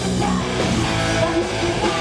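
Live rock band playing on stage, guitar to the fore, with no singing in this stretch.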